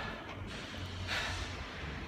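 A man's single breathy exhale about a second in, the skater catching his breath after a tiring run, over a steady low hum.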